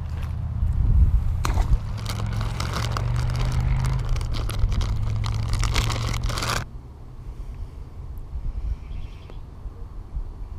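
Plastic soft-bait bag crinkling and crackling as hands dig in it for a worm. It starts about a second and a half in, goes on for about five seconds and cuts off suddenly. A low rumble runs under it throughout.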